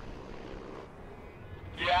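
A helicopter flying away, a steady noise that slowly fades. A man's voice cuts in at the very end.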